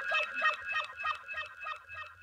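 A beat played from a DJ controller: a high repeating pattern at about four hits a second, with a short sound that slides in pitch added on each hit, fading out near the end.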